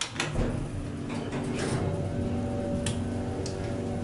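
Otis hydraulic elevator starting a run: a few clicks and clunks as the doors and controller act, then the hydraulic pump motor comes on with a steady hum and whine from about two seconds in.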